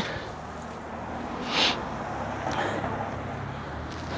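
Steady low outdoor hum of distant traffic, with one brief rustle about one and a half seconds in.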